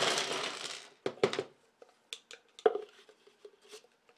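Small plastic Lego Bionicle pieces tipped out of their plastic canister onto a wooden desk: a dense rattle for about the first second, then a few scattered plastic clicks and knocks, the loudest about two and a half seconds in.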